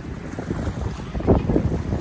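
Wind buffeting the microphone: a rough, gusty low rumble that swells about a second and a half in.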